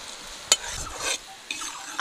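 Sugar syrup boiling and hissing in a metal wok as a perforated slotted spoon stirs it, scraping the pan, with a sharp clink about half a second in.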